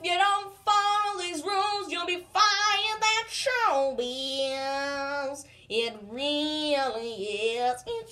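A high solo voice singing unaccompanied, holding long wavering notes with short breaks and sliding down in pitch about halfway through.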